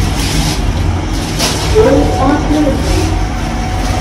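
Steady low rumble inside a lift car, with a faint voice about halfway through.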